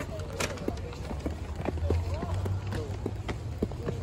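People walking up concrete steps, with scattered footsteps and the chatter of voices around, over a steady low rumble.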